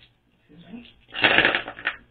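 A handful of woodless colored pencils clattering as they are laid down and spread out on a tabletop: a dense rattle of many small clicks lasting under a second, in the second half.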